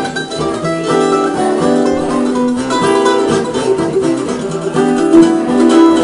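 F-style mandolin played with a flatpick: a run of quick picked notes in a folk or bluegrass tune.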